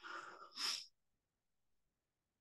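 A man's short breath over a video-call microphone, faint and under a second long, with a hissing exhale at its end.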